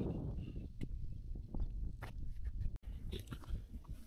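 Footsteps on dry dirt and scrub, with irregular crunches and rustles, over a low wind rumble on the microphone.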